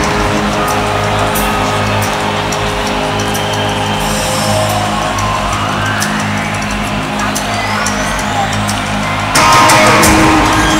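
Live synth-rock band playing an instrumental passage over a stadium PA, recorded from the stands. Sustained low synth notes hold steady while a sweeping tone rises in pitch. Near the end the full band comes in louder.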